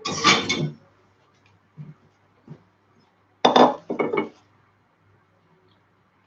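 Metal utensils clattering and clinking against a serving dish while a cream cake is sliced and served. There is a clatter at the start, small knocks a couple of seconds in, and two sharp clinks about three and a half seconds in.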